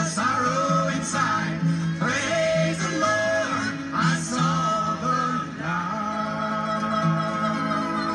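A gospel song: a voice singing over acoustic guitar, settling into a long held note in the second half.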